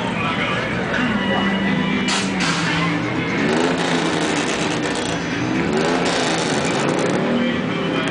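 Car engine running and being revved, its pitch rising and falling a couple of times in the second half, with voices around.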